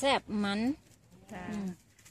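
A woman speaking, with a long drawn-out vowel early on and a shorter, quieter phrase a little past the middle. No other sound stands out.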